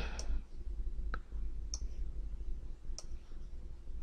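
Computer mouse buttons clicking a few separate times, roughly a second apart, over a faint steady low hum.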